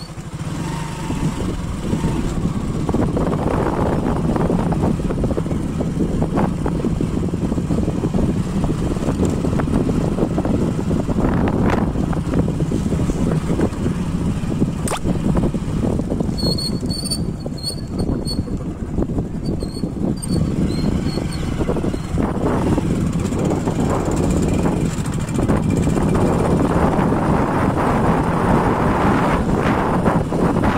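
Two-wheeler engine running steadily while riding along a road, with road and wind noise.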